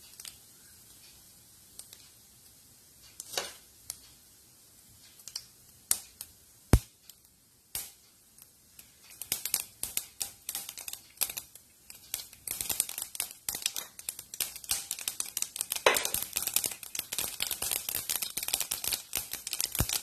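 Mustard seeds spluttering in hot oil in a pan as they temper: a few scattered pops at first, then rapid crackling from about halfway that grows denser toward the end, showing the oil has reached popping heat.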